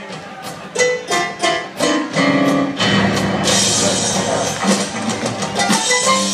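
Live band music: a few sparse plucked notes at first, then the full band comes in about two seconds in, with cymbals joining a second or so later.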